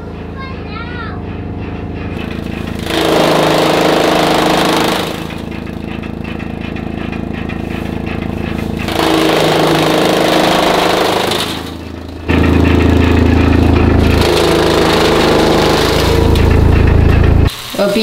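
Chaff cutter chopping green fodder, its machinery running steadily. It grows louder in three long stretches as the fodder is fed through the blades.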